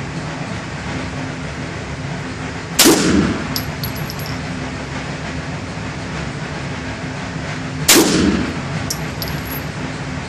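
Two 9mm pistol shots from a Beretta 92FS, about five seconds apart (roughly three and eight seconds in), each with a short echo in an indoor range. A few faint clicks follow each shot.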